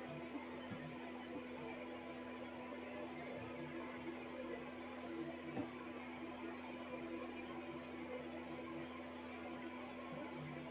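Faint steady hiss with a constant low hum: background room tone of the recording.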